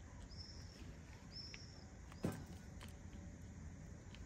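Faint crumbling ticks of a hand working loose potting mix in a plastic pot, with a single sharp thump just past the middle. A bird gives two short, high whistled calls about a second apart in the first half.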